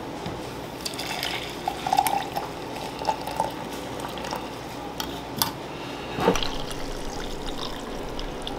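Coffee poured from a French press through a small mesh strainer into a stoneware mug: a steady trickling pour, with a couple of light clicks in the second half.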